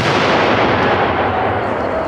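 An explosion: the noise of a ground blast that began with a sudden crack just before, carrying on loud and steady.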